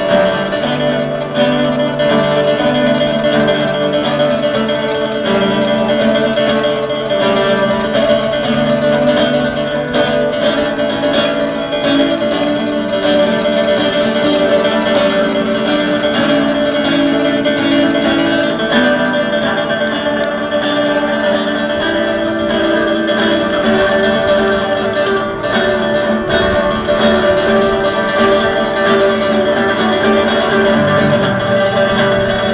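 Plucked-string instrumental music, guitar-like, playing continuously with notes held and ringing over one another.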